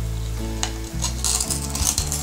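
A kitchen knife scraping and ticking against a gaper clam shell on a wooden chopping board as the clam is opened, over a sizzle of onions and chorizo frying in the pot.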